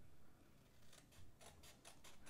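Small scissors snipping through thick white cardstock. A quick run of faint snips comes in the second half.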